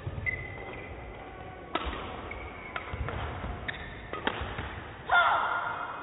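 A badminton rally: a shuttlecock struck back and forth with rackets, sharp hits about a second apart, with short squeaks from shoes on the court floor. About five seconds in, a louder wavering squeal or cry ends it.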